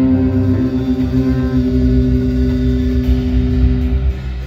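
Live jazz-blues band of two electric guitars, electric bass and drums holding long sustained notes that ring over a low rumble of bass and drums, then stop just before the end.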